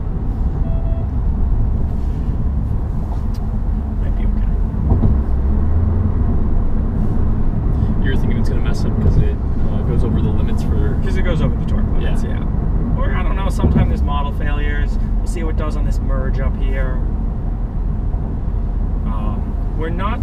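Steady road and tyre noise inside a Toyota's cabin at highway speed, a constant low rumble, with quiet talk in the middle stretch.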